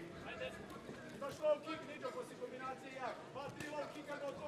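Faint voices of people in the arena calling out in the background, with a few faint knocks from the fight in the ring.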